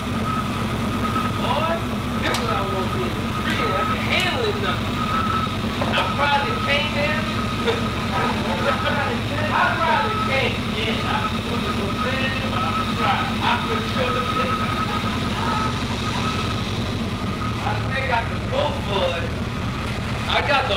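A vehicle engine idling steadily, with indistinct voices talking over it.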